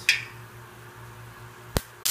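Two sharp clicks, one just after the start and a louder one near the end, over a faint steady low hum.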